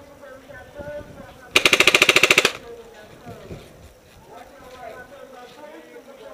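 Paintball marker firing a rapid burst of about a dozen shots in one second, loud and close, about a second and a half in.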